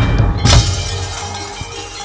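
Javanese gamelan accompaniment for a wayang kulit shadow-puppet play. A drum stroke is followed, about half a second in, by a loud jangling metallic clash typical of the puppeteer's kecrek, the hanging metal plates struck to mark a puppet's movement. The music then settles to softer, sustained ringing tones.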